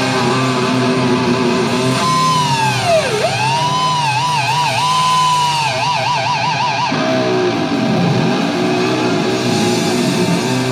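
Power metal band playing live and loud with distorted electric guitars. About two seconds in, a high lead guitar line swoops down in pitch and back up, then warbles with fast vibrato and trills until it breaks off about seven seconds in.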